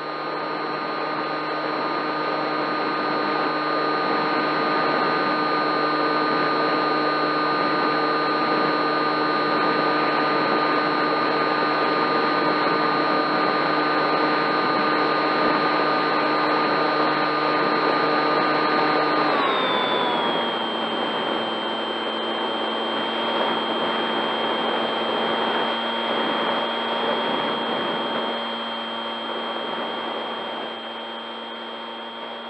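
Electric motor and pusher propeller of a Bixler foam RC plane whining steadily over rushing air, heard from its onboard camera. About twenty seconds in, the pitch glides down as the motor slows, then holds at a lower whine.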